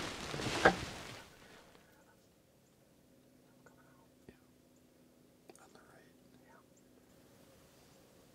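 A man whispering a few words, then near silence broken by one faint sharp click about four seconds in and a little faint rustling a second or two later.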